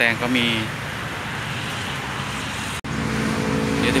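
Passing road traffic as a steady rushing noise, broken off suddenly near the end and followed by a steady engine hum.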